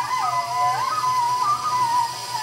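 Live Middle Eastern ensemble music: a sustained solo melody line that slides down in pitch early on and glides back up just before the one-second mark, then carries on with small turns, over a soft accompaniment.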